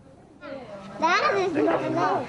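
Children's voices talking, starting about half a second in and louder from about a second in.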